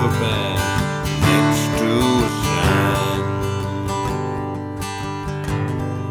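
Acoustic guitar strummed in a steady rhythm. A man's singing voice carries over the first half, then the guitar plays alone.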